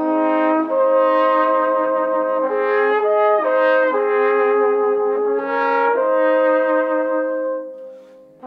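Instrumental passage of a Tyrolean folk song: several held notes sounding together as slow chords that change about every second, dying away near the end.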